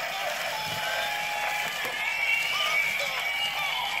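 Tinny recorded music with voices playing from a greeting card's sound chip through its tiny speaker, thin and lacking any bass.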